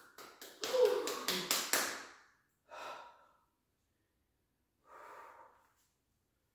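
A woman breathing hard, out of breath at the end of a cardio workout: a run of gasping, breathy sounds with a little voice in the first two seconds, then two single breaths out about three and five seconds in.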